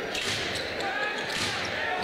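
Basketball arena ambience: a steady crowd hubbub with a basketball being dribbled on the hardwood court during live play.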